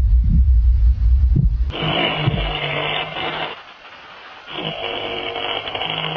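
Heavy, raspy breathing like snoring: two long breaths of about two seconds each, after a low rumble in the first couple of seconds.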